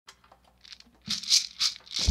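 A shaker-like rattle in a steady rhythm, about three strokes a second, starting about a second in after a few faint clicks: the opening beats of backing music.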